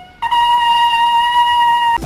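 A single sustained musical note, horn-like, that starts a moment in after a brief dip and holds steady at one pitch.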